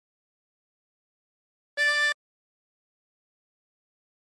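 A 24-hole tremolo harmonica sounding a single short draw note on hole 10, the D that ends the phrase, held for under half a second about two seconds in.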